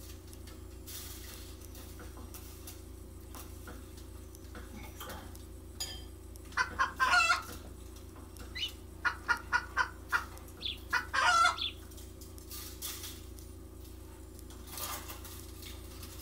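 Chicken clucking in a few short runs of quick clucks, the loudest near the middle, over a steady low hum.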